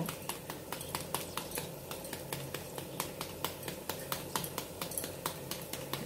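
Chopped onion and tomato frying in a pan, crackling with many small irregular pops, over a faint low steady hum.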